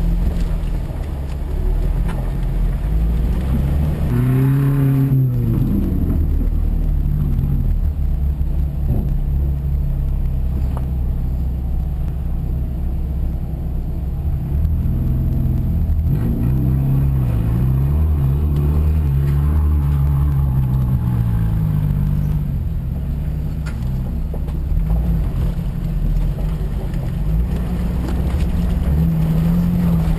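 Jeep engine running under load over rough ground, its pitch rising and falling as the throttle is opened and eased off, over a steady low rumble. A few sharp knocks come through now and then.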